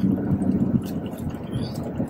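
Road and engine noise inside the cabin of a moving car: a steady low drone.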